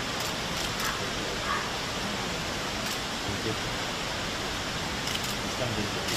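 Low, murmured conversation over a steady rushing background noise, with a few faint clicks.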